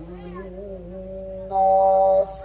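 A man chanting a Quran verse in the melodic recitation style, holding long, slightly wavering notes. About a second and a half in, he moves up to a louder, higher note and holds it.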